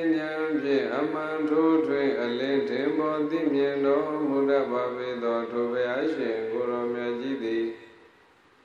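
A Buddhist monk chanting into a microphone, his voice held on long notes with gliding pitch changes between them. The chant stops just before the end.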